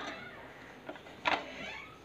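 A ladle stirring cooked rice in an aluminium pressure cooker, with soft scraping against the pot. There is one brief, louder scrape a little after a second in.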